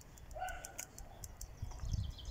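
Small birds chirping: a quick run of short, high chirps in the first second, with one brief lower whistled note among them.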